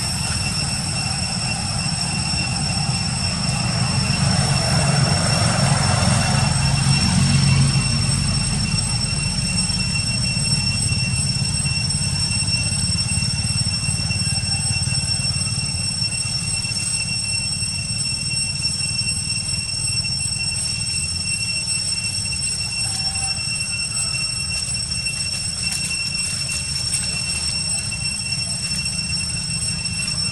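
A steady high-pitched whine over a low rumbling noise; the rumble swells between about four and eight seconds in.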